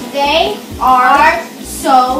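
Speech only: a girl talking in three short phrases.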